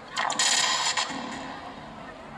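A brief, bright rattle of under a second, starting sharply about a fifth of a second in and dying away within the second.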